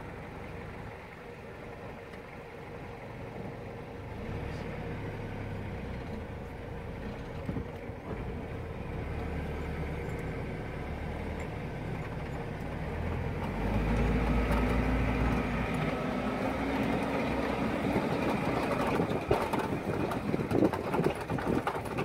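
A safari vehicle's engine running at low speed, growing louder and slightly higher in pitch a little past halfway as the vehicle moves off, with scattered knocks and rattles near the end.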